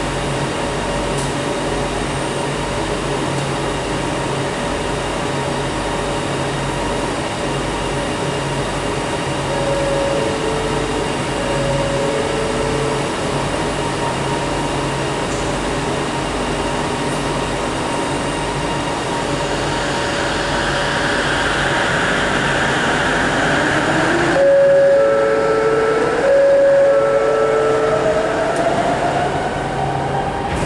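Interior of a rapidKL ART Mark III light-rail car at a station: steady ventilation hum, with a two-tone chime alternating high and low twice, the second time louder, followed by the doors closing. After the second chime the electric traction drive whines, rising steadily in pitch as the train pulls away.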